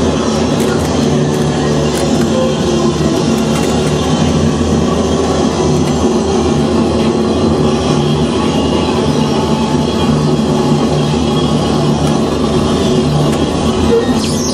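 Experimental noise music from cassette tapes: a loud, dense, unbroken wall of layered sound with a steady low hum beneath it.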